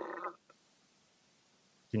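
A faint, thin, garbled voice coming over a glitching video-call link, its low end missing, which cuts off about a third of a second in. Then near silence until a man starts speaking at the very end.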